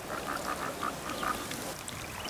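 Frogs croaking at a spring: a quick, regular run of short croaks, several a second.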